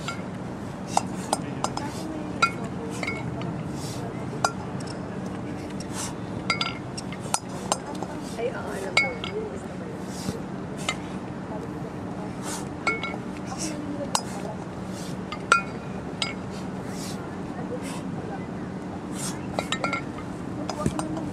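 Pairs of kettlebells knocking together as they are cleaned and jerked overhead: short, sharp clinks at irregular intervals, a few of them loud, over a steady low hum.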